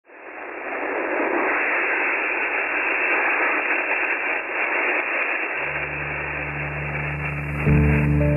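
Steady hiss of static from an Icom IC-9100 transceiver's receiver in upper-sideband mode on the 6-metre band, heard through the narrow sideband audio band as the radio is tuned. The hiss fades in at the start, and a low steady drone joins about five and a half seconds in.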